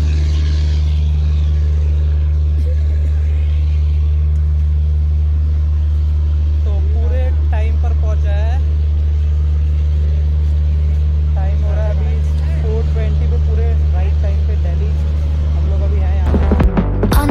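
A loud, steady low hum that does not change in level or pitch, with faint voices of people now and then.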